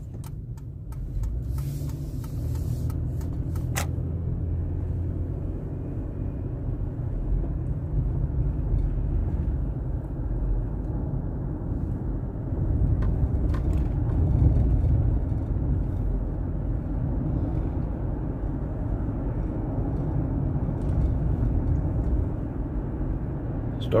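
Car cabin road noise while driving: a steady low rumble of engine and tyres on the road, heard from inside the car, with a few light clicks in the first few seconds.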